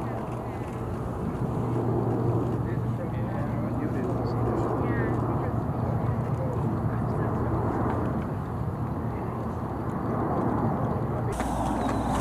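Military transport aircraft engines droning steadily overhead, with a wash of wind-like noise.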